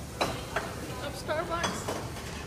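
Two sharp clicks a fraction of a second in, then a short voice-like sound with a wavering pitch about a second and a half in, over steady background noise.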